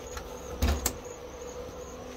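Two short knocks close together, with a low thump, a little over half a second in, over a faint steady hum and a thin high whine.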